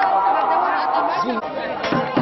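A crowd of women's voices talking and calling out all at once, several overlapping, with one sharp clap or knock near the end.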